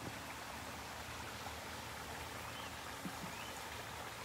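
Small garden waterfall spilling over rocks into a pond, a steady, even splashing.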